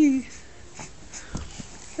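A short vocal sound right at the start, falling in pitch, then quiet room tone with a soft low thump about a second and a half in.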